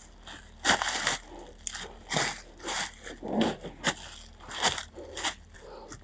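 Footsteps crunching on dry leaf litter and debris, about eight irregular steps.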